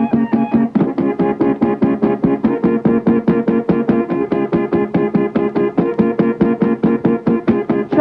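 Instrumental music: a keyboard plays rapid, evenly repeated chords, changing chord every second and a half or so, with no singing.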